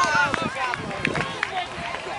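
Several voices of players and spectators calling and talking over one another at the same time.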